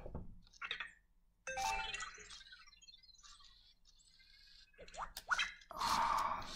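Anki Vector robot giving a short run of electronic chirps and beeps about a second and a half in, as it stops at the table edge instead of backing off it; a few faint clicks follow near the end.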